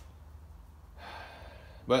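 A man drawing in a breath about a second in, just before he speaks, over a faint steady low hum.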